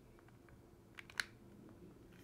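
Near silence of a small room, broken by two faint, sharp clicks close together about a second in.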